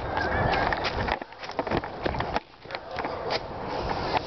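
Handling noise from a handheld camera being swung about: rustling and rubbing as hair and clothing brush over the microphone, with irregular knocks and bumps.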